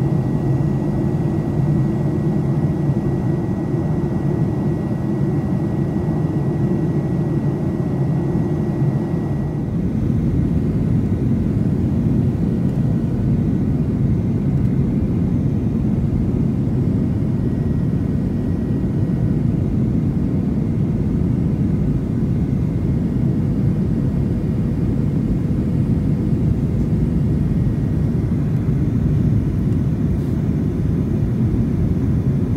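Steady engine and airflow noise inside the cabin of a Boeing 737-900, whose CFM56-7B engines are turning on the approach to landing. A faint high tone sits over the noise and fades about ten seconds in, where the sound shifts slightly lower.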